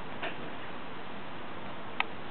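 Steady hiss with two small clicks: a soft one shortly after the start and a sharper, louder one at the very end.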